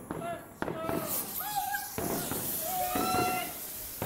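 A lit fireworks fuse fizzing with a steady hiss that starts abruptly about half a second in. People laugh and exclaim over it.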